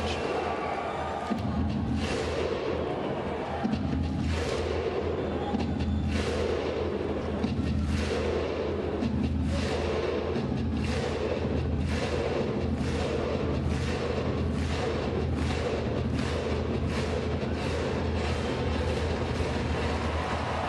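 Music over an arena's sound system: a low sustained drone with heavy drum hits that come faster and faster, building up.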